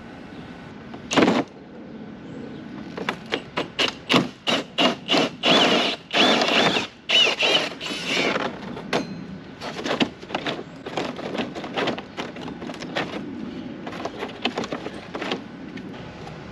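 Drill spinning a hole saw through vinyl siding in stop-start bursts: one short burst about a second in, then a run of rapid short bursts with stretches of steady whine, and more scattered bursts later on.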